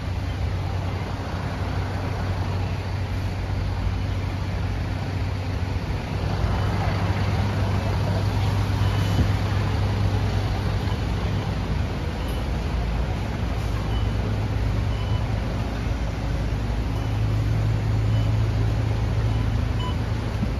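City bus engine idling with a steady low hum that swells at times, amid bus-interchange vehicle noise; a few faint short high beeps sound in the second half.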